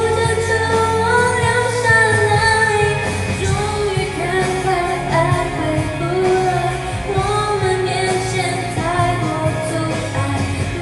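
A woman singing a Mandarin pop song with sustained, gliding sung notes over an instrumental backing track.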